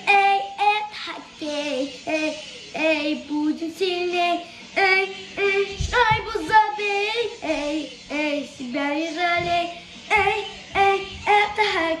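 A young boy singing energetically in held, wavering notes, phrase after phrase with short breaks between. There is a brief low thump about six seconds in.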